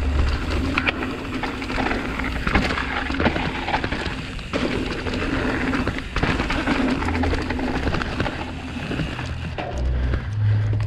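29-inch hardtail mountain bike ridden fast down a dirt forest trail: tyre noise on the dirt and frequent rattles and knocks from the bike over small bumps and drops, with wind rumbling on the microphone.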